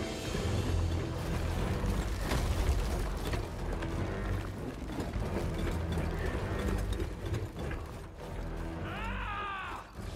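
Cartoon sound effects: a deep, steady rumble with mechanical clanking and ratcheting, mixed under music, as red smoke billows over the land. About nine seconds in comes a brief swooping whine.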